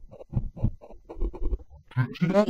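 Granular effect output from a TipTop Audio Z-DSP's Grain De Folie card on its 'three pitched grains' freeze algorithm: a frozen sample chopped into rapid, stuttering grains, pitched down as the pitch control is turned.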